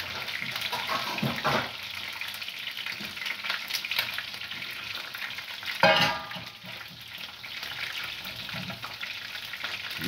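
Chicken feet, beef and fish sizzling as they fry in a pan. About six seconds in there is a sharp clink as diced tomatoes are tipped from a glass bowl into the pan, and the sizzling is quieter after it.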